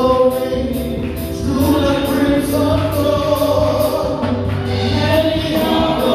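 Group of voices singing a gospel hymn in sustained, held lines over electric keyboard accompaniment, with a light steady beat.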